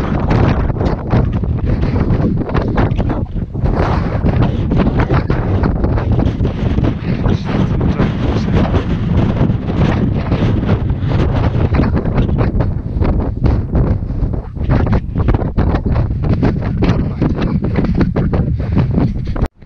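Wind buffeting the microphone on an exposed snowy mountain ridge: a loud, gusty rumble.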